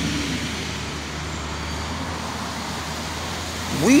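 Steady background noise of city street traffic, an even rumble with no distinct events.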